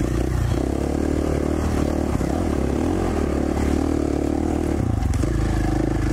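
2017 KTM 450 XC-F's single-cylinder four-stroke engine running at a fairly steady pace in second gear while the bike rides down a dirt single track, with a few faint knocks from the bike over the rough ground.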